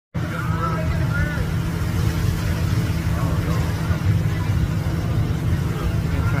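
A steady low rumble throughout, with faint, indistinct voices in the background.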